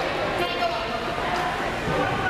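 Indistinct voices and general hubbub echoing in a large gymnasium, steady throughout with no clear words.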